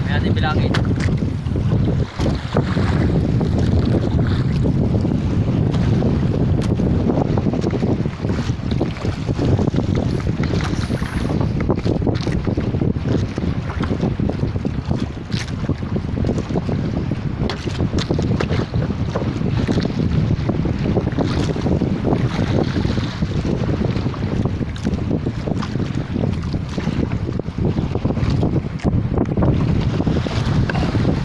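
Wind buffeting the microphone over water washing against the hull of a small outrigger boat, a steady low rush, with a few light knocks on the boat.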